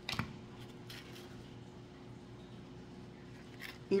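A hot glue gun set down on a tabletop with one sharp knock, followed by faint handling of craft-foam petals with a few soft clicks, over a thin steady hum.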